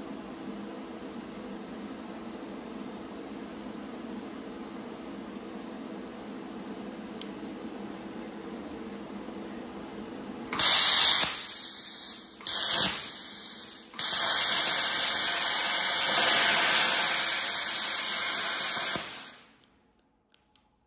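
Steady low hum, then a plasma cutter's arc strikes with a loud hiss about halfway through. The hiss drops out briefly twice, runs on for several seconds and dies away just before the end as the supply trips out: the cutter is overloading the heat trip on a 13 amp extension lead.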